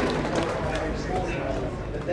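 Indistinct talk from several people over a steady low background rumble.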